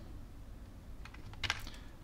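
A few light computer clicks, two of them close together about one and a half seconds in, over faint room noise.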